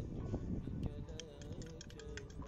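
Scattered light clicks and taps over a low rumble, with faint background music coming in about halfway through.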